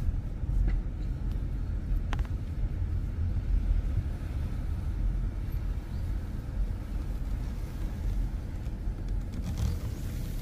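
Steady low rumble of engine and tyres heard from inside a car's cabin while it drives slowly.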